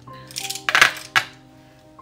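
Makeup brush handles clattering and clinking together as a handful of brushes is gathered up, a quick run of sharp knocks lasting under a second, with soft background music holding steady notes underneath.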